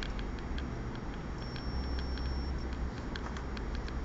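Light, uneven clicking and ticking, a few clicks a second, over a steady low hum, with a brief faint high whine in the middle.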